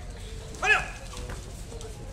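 A single short, high-pitched shout about two-thirds of a second in, rising and then falling in pitch: a young girl's kihap, the fighting yell of taekwondo sparring.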